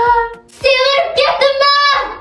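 A high-pitched voice singing long, drawn-out notes: a short held note at the start, a brief break, then a longer sustained phrase to the end.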